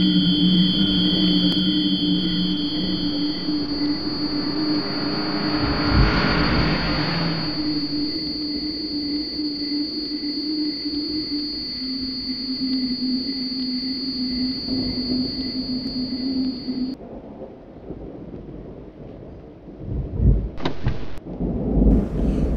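Eerie drone of several steady held tones, with a faint regular pulse over it and a swell of rushing noise about six seconds in. It cuts off abruptly a few seconds before the end, leaving quieter noise with a couple of thumps near the end.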